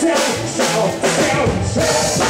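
A live samba band playing, with a drum kit keeping a steady beat under sustained melody lines.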